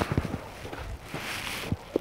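Footsteps on a frost-covered garden path, a few irregular soft steps, with a brief hiss just past the middle.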